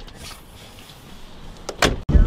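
Low shuffling and rustling inside a car, then one sharp knock near the end.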